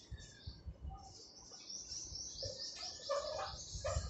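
A small bird calling a rapid series of about eight high, falling notes, over the scratch of a marker writing on a whiteboard.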